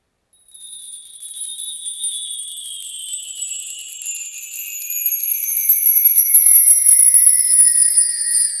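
Shimmering, tinkling jingle-bell sound effect for a programme's logo transition. It starts about half a second in and is made of several high tones that glide slowly downward in pitch while swelling louder.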